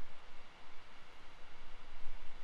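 A pause in the talk: only steady background hiss with a low room rumble.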